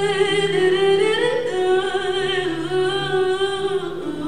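A solo singer holding long notes with vibrato, sliding between pitches about a second in, over a softly sustained acoustic guitar.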